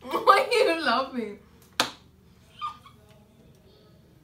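A person's voice for about the first second and a half, its pitch sliding downward, followed by one sharp click.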